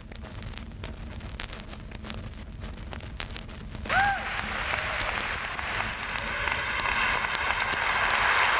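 The opening of a house record played on vinyl: scattered surface clicks and pops over a low rumble, then from about four seconds in a brief whoop and a crowd sample applauding and cheering, swelling louder toward the end.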